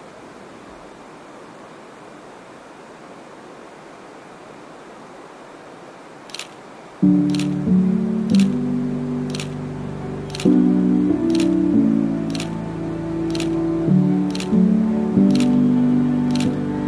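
Camera shutter clicking roughly once a second, starting about six seconds in. Loud music comes in a second after the first click; before that there is only a faint steady hiss.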